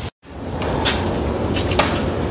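A brief dropout at an edit, then steady indoor room noise with a couple of short clicks or knocks.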